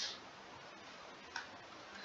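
Faint room tone with a single computer-mouse click about a second and a half in.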